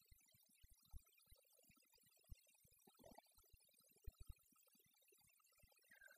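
Near silence, broken only by a few faint, brief low ticks.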